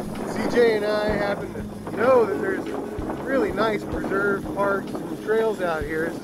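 Indistinct talking over wind buffeting the microphone, with a steady hum underneath from the moving Razor electric dirt bikes.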